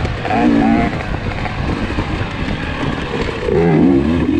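KTM 300 XC two-stroke dirt bike engine riding on and off the throttle. Revs are held briefly near the start, the sound is rougher with no clear pitch through the middle, and the pitch rises again near the end as the throttle opens.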